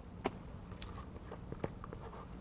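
A few faint clicks and taps of a spatula against a stainless steel mixing bowl as whipped cream is scraped out into a glass bowl, over low room hum.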